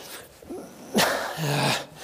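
A man clears his throat with a short, sharp cough about a second in, followed by a brief voiced rasp.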